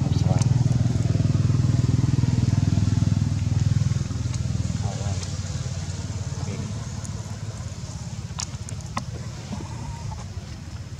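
A motor engine running steadily, loudest for the first four seconds and then fading, with a few sharp clicks near the end.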